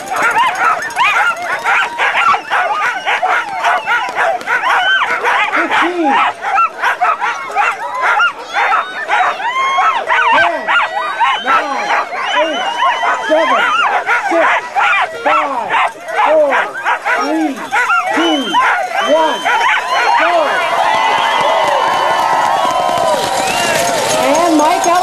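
A team of Siberian huskies in harness barking and yelping without pause, many voices overlapping into a din. This is the eager clamour of sled dogs waiting to be released at a race start.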